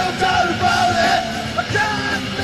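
Live punk rock band playing loud, with the singer shouting a long, wavering vocal line over the drums and guitars.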